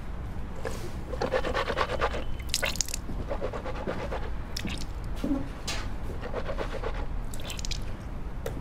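Teeth being brushed at a bathroom sink: irregular runs of short scrubbing scrapes.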